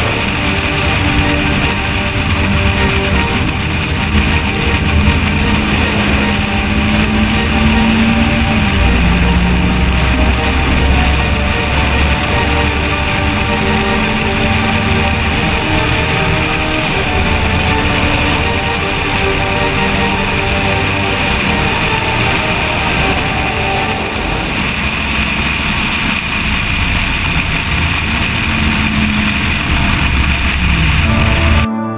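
Car engine running hard on track, heard from a camera mounted on the outside of the car, with steady wind noise over the microphone. The engine pitch drops sharply about nine seconds in, then rises again. The engine note changes near the end.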